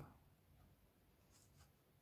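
Near silence: room tone, with two faint brief rustles of the paper instruction sheet being handled about one and a half seconds in.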